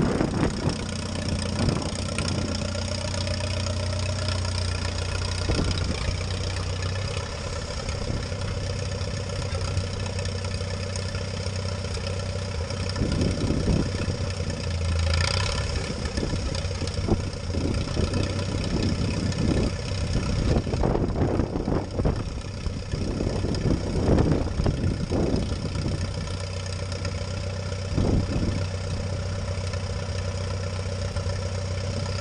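Allis-Chalmers WD tractor's four-cylinder engine running steadily while the tractor works a box scraper through the feed-lot mud, with wind gusting on the microphone now and then.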